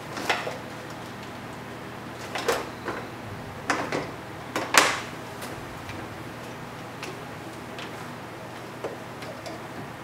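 A few sharp clicks and knocks of small hard objects being handled on a tabletop, the loudest about five seconds in and fainter ones later, over a steady low hum.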